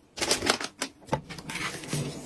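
An irregular run of sharp clicks and light taps from plastic household fittings being handled.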